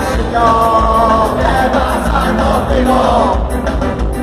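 Ska band playing live and loud, with singing over the band.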